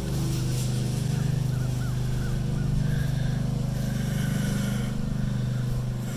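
An engine idling steadily, a low even hum that holds the same pitch throughout and cuts off just after the end.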